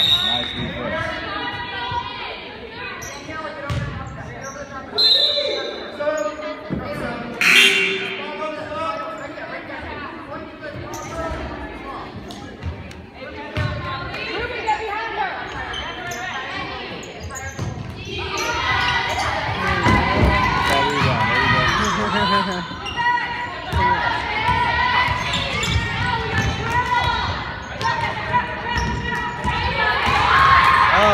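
Basketball bouncing on a gym court, with knocks scattered through, under the chatter and calls of many spectators and players echoing in the hall; the voices grow louder about two-thirds of the way in.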